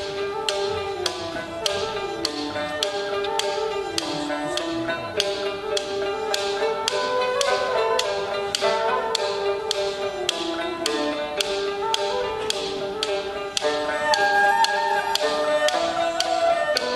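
Nanyin ensemble playing a fast passage: a vertical bamboo flute (dongxiao) and bowed fiddle carry the melody over plucked pipa and lute notes, while wooden clappers (paiban) strike a steady beat about two times a second.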